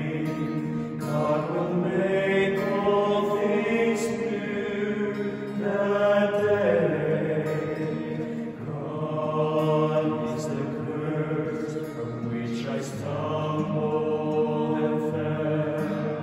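Male vocal ensemble singing a slow song in sustained harmony, with an acoustic guitar accompanying, in a church.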